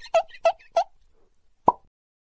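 Animated title-card sound effects: three short pops in quick succession, about three a second, ending about a second in, then a single sharp click near the end.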